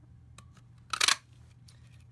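Stampin' Up! Cat Punch, a handheld craft punch, pressed once to cut a cat shape out of paper: one sharp clack about a second in.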